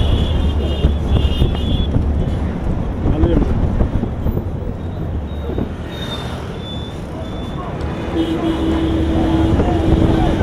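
Busy street traffic heard from inside it: engines running close by and wind on the microphone. A steady tone is held for about two seconds near the end.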